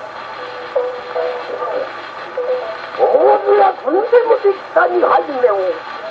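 A man's rōkyoku chanting, sung in long wavering, bending phrases, played back from a 1912 acoustic-era 78 rpm disc. It sounds through a Victrola acoustic gramophone's horn from a soundbox fitted with a cactus needle, with steady surface hiss and hum underneath. The voice grows louder and more animated about halfway in.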